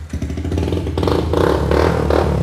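Yamaha FZ150i single-cylinder engine, fitted with an aftermarket exhaust, running and being revved up on the throttle, growing louder from about half a second in.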